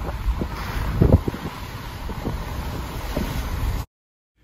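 Wind buffeting the microphone: a steady low rumble with a few sharper thumps, cutting off suddenly near the end.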